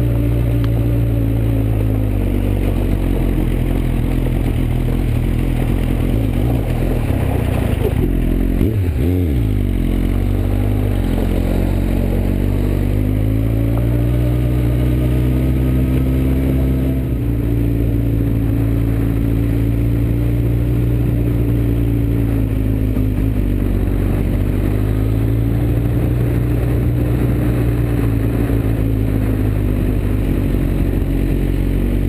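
Suzuki GSX-R1000 inline-four engine heard from a helmet camera as the bike rides a rough gravel track. Its note rises and falls gently with the throttle, with a brief dip and wobble in pitch about nine seconds in.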